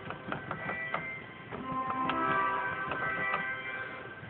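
Bedient tracker pipe organ played on its Oboe 8′ reed stop, sounding in a resonant church: a run of short notes, then several notes held together from about halfway in.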